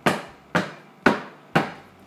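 A filled soap loaf mold rapped down on a granite countertop four times, about twice a second, each knock fading quickly. The tapping works the air pockets out of the freshly poured cold process soap batter.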